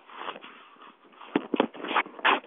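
Rustling and scraping handling noise from a camera being moved about, with a few sharp knocks about one and a half seconds in.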